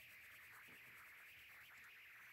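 Faint scratching of a Crayola Colors of the World coloured pencil shading on coloring-book paper, barely above room tone.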